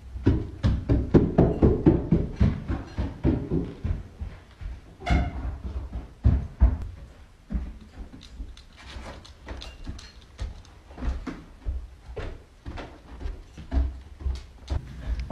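Footsteps thudding on a wooden staircase, as of someone running on the stairs: quick, closely packed thuds for the first three seconds or so, then slower, scattered ones.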